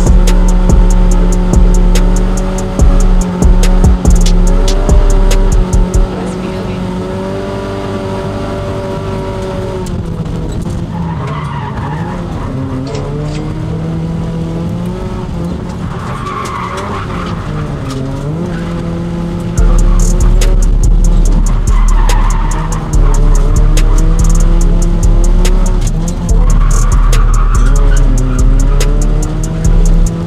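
Toyota Corolla engine revving up and down while driven hard, with tyres squealing several times in the second half as the car slides. Background music with a heavy beat plays over it, loudest at the start and again from about two-thirds of the way in.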